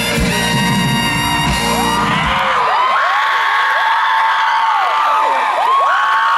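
A live band holds a final chord with drum hits that stops about two and a half seconds in. An audience cheers, with many shrill whistles and whoops, through the rest.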